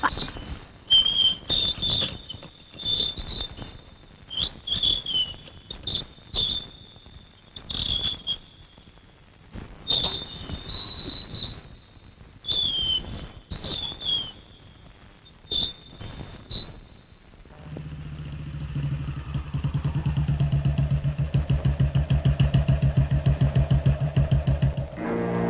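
Birds chirping in short clusters of quick, high, falling whistles with quiet gaps between them. About seventeen seconds in, a motorcycle engine comes in with a low, steady beat that grows louder.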